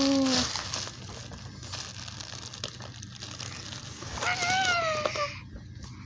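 Clear plastic bag crinkling and rustling as hands handle it, with a voice briefly at the start and a drawn-out vocal sound a little after four seconds in.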